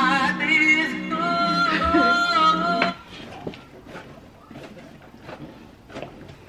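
Male voice singing over music, holding one long steady note. The song cuts off suddenly about three seconds in as playback is paused, leaving faint room noise and a few light clicks.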